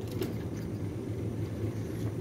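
Steady low hum of arcade machinery, with faint background noise and no distinct clicks or knocks.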